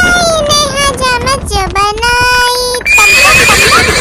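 A voice singing a Hindi nursery rhyme over a backing track, then, near the end, a loud horse whinny sound effect, high and wavering, lasting about a second.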